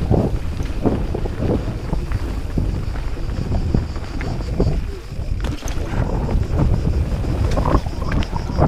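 Rocky Mountain 790 MSL mountain bike running fast down a dirt trail: wind buffeting the chest-mounted action camera's microphone, with tyre noise and frequent short knocks and rattles as the bike goes over bumps.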